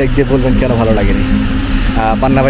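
Mostly speech: a man talking to the camera over a steady low background rumble.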